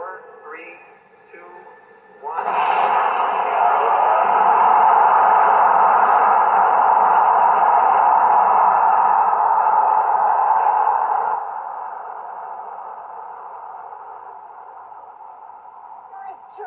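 Film soundtrack playing on the computer: a loud, steady rushing blast of rocket engines firing starts suddenly about two seconds in, drops sharply about eleven seconds in and then fades off slowly.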